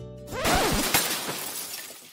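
Light guitar music is cut off about half a second in by a loud glass-shattering crash sound effect, which fades away over the next second and a half.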